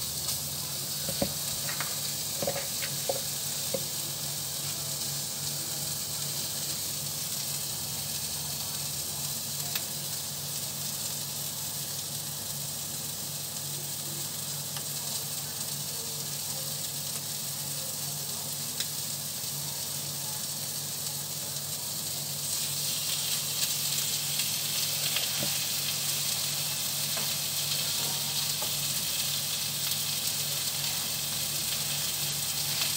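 Burger patties sizzling as they fry in a non-stick frying pan, a steady hiss. It gets louder about three quarters of the way through, when a second patty goes into the pan.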